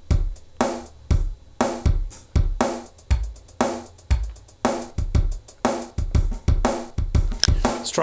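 Drum machine patterns playing kick, snare, hi-hat and cymbal in a steady beat. The pattern changes a couple of times, getting busier about two and a half seconds in and shifting again around halfway, as different drum patterns are tried out for a shuffle.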